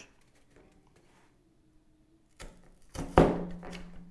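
A hand hole punch pressed through doubled-over cardboard: quiet handling at first, then a couple of small knocks and one loud, sharp thunk about three seconds in as it cuts through.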